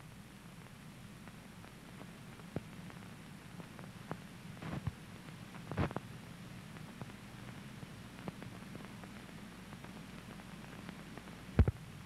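Steady low hum and hiss of an old film soundtrack, with a few scattered sharp clicks, the loudest just before the end.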